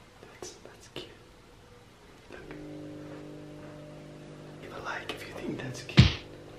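A few soft clicks, then a steady low hum of several held tones starting about two seconds in; near the end a person whispers.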